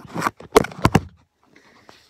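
Handling noise of a phone being moved and set in place: several sharp knocks and rubs on its microphone in the first second.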